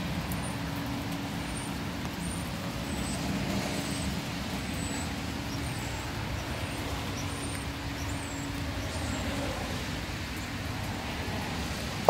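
Steady outdoor background noise with a low hum, typical of distant road traffic. The hum fades out about nine and a half seconds in. Faint high chirps come and go throughout.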